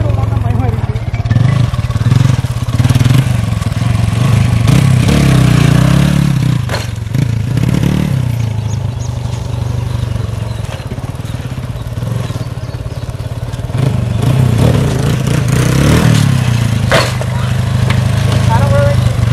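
Motorcycle engine running and being revved, rising twice, once in the first half and again near the end, with a quieter stretch in the middle. A sharp loud click or knock comes near the end.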